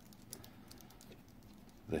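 Faint, scattered small clicks and light taps of a 3D printer hot end's parts being handled and worked apart from the heat block.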